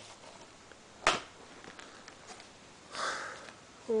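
Quiet handling of plastic DVD cases, with one sharp click about a second in, then a short sniff near the end.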